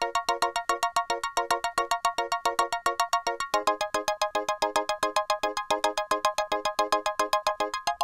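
A fast, even sequence of short pitched synthesizer percussion notes, FM-synthesised vibraphone and block-like sounds, about eight notes a second, in an 80s italo-disco pattern. The note pattern changes a little past the halfway point.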